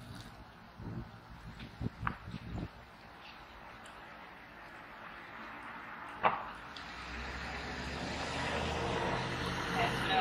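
Water running in a thin stream from a concrete biosand filter's outlet tube into a small plastic cup, growing steadily louder as the cup fills; the filter is flowing at the expected rate, about 500 ml in 27 seconds. A few light knocks come in the first three seconds, a sharp click a little after six seconds, and a low rumble joins about seven seconds in.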